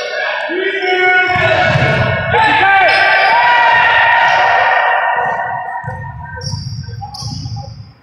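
A basketball bouncing on a hardwood gym floor during a pickup game, with a long drawn-out shout from a player over it. There are a few short high squeaks near the end.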